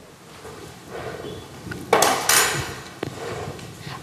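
A spoon scraping and tapping against glass as sugar is tipped from a small drinking glass into a glass bowl of beaten egg whites. There is a louder brief rush about two seconds in and a single sharp click about a second later.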